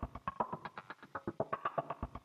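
Playback of audio resampled from Sempler, a Max for Live sampler-sequencer that jumps between random slices of recorded sounds. The result is a fast, quantized pattern of short, chopped percussive hits, several a second, with a faint tone running under them.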